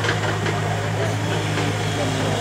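An engine idling steadily, with people's voices in the background.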